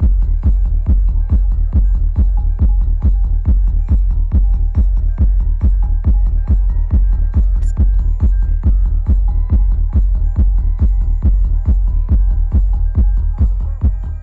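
Psytrance played loud over a festival PA: a steady four-on-the-floor kick drum at about two and a half beats a second under a heavy rolling bassline.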